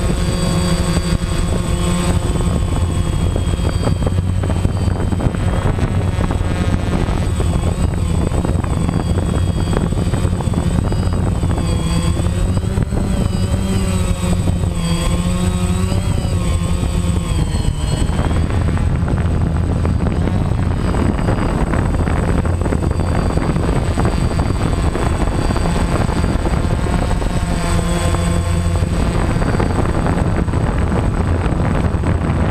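DJI Phantom 1 quadcopter's four propellers and motors running steadily and loudly, heard close from the aircraft itself as it lifts off and climbs; the motor pitches waver up and down as it adjusts in flight, most clearly in the middle.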